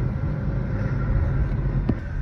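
Steady engine and road rumble heard from inside a moving car with its windows down, with one short click near the end.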